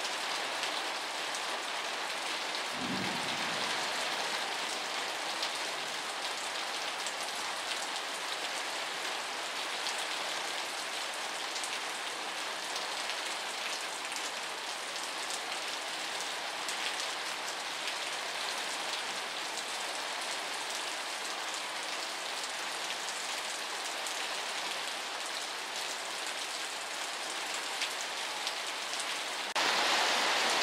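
Steady rain falling, heard from under a porch roof as a continuous even hiss, with a short low thud about three seconds in. It gets louder just before the end.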